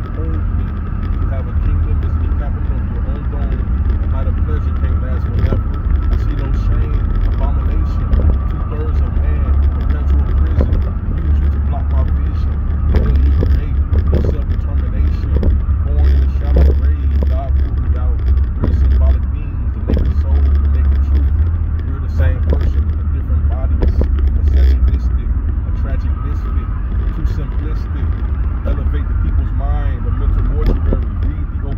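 A man's voice talking inside a moving car, over a steady low road and engine rumble in the cabin.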